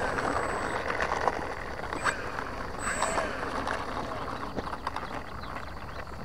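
Electric motor and propeller of an FMS P-39 Airacobra 980 mm RC plane taxiing on asphalt, a whine that rises and falls in pitch with the throttle.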